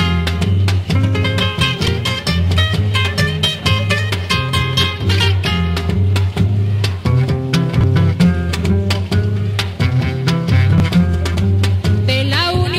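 Instrumental passage of a Peruvian tondero played on guitars, with a steady bass line and quick, sharply struck rhythm.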